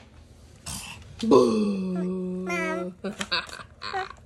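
A person's drawn-out vocal sound, sliding down in pitch and then held for over a second, with a few short vocal sounds after it.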